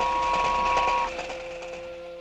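Cartoon toy steam train running: a steady whistle held for about the first second over a rapid rhythmic clatter that fades, with low sustained notes underneath.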